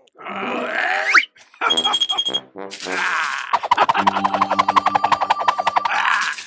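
A cartoon character's wordless grunts and vocal noises, in several short bursts with a rising glide about a second in and a short high tone about two seconds in. In the last two and a half seconds comes a rapid, stuttering pulsed vocal sound.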